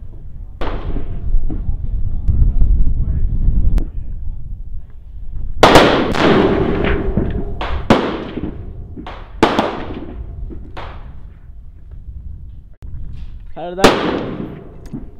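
Rifle gunshots on an open range, among them a .50 BMG rifle. The loudest shot comes about five and a half seconds in, with a long echoing tail, and further sharp shots follow every second or two. A low rumble fills the first few seconds.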